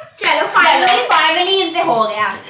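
Young girls' voices, loud and drawn out, with hand claps.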